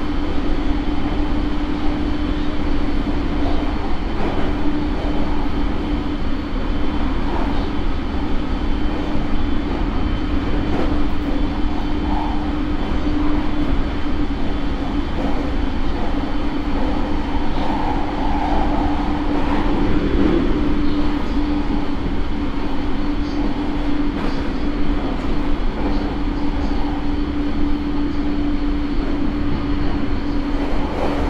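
Inside E217-series commuter train motor car MoHa E217-1 running at a steady speed: a constant pitched hum from the MT68 traction motors and their Mitsubishi IGBT inverter drive, over a continuous rumble of wheels on rail.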